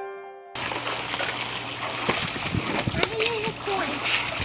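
A sustained musical note from a logo chime fades out; about half a second in it cuts to people swimming in a pool, with splashing water and a voice calling out.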